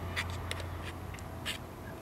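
Faint clicks and scrapes of a brass Beer Spike prying at the torn edge of a punctured aluminium beer can, widening the hole, over a low steady hum.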